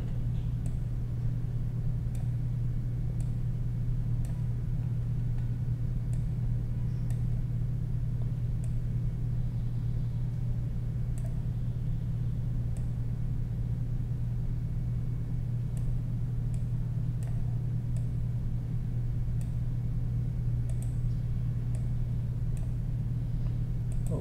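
Steady low electrical-sounding hum from the recording background, with faint scattered mouse clicks every second or so as path nodes are dragged and edited.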